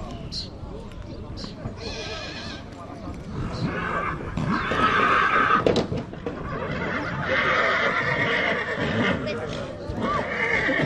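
Horses whinnying: several drawn-out high calls, one about two seconds in, a longer one from about the middle, and another in the second half, over a background of voices.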